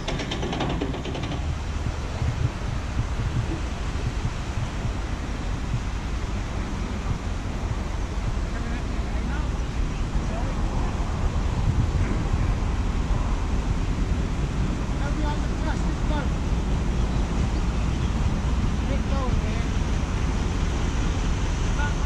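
Wind buffeting the microphone in a steady low rumble, with faint distant voices.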